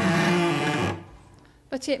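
A single rough, scratchy bowed note on a cello, lasting about a second before it stops: a beginner's clumsy first stroke of the bow across the strings.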